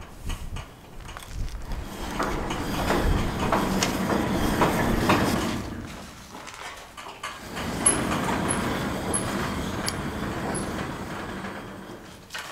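Sliding barn door rolling along its aluminium-angle track on home-built pulley rollers, with its plywood-disc guide running in an aluminium channel at the bottom. It rumbles open for about five seconds, pauses briefly, then rumbles closed again.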